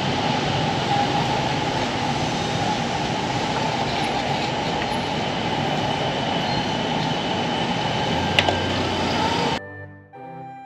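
Steady, dense city street noise, mostly a low traffic roar. About nine and a half seconds in it cuts off suddenly to quiet music.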